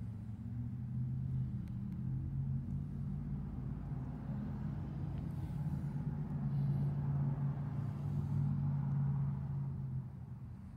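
A steady low rumbling hum with a few held low pitches, like a motor running. It swells up at the start and grows a little louder in the second half.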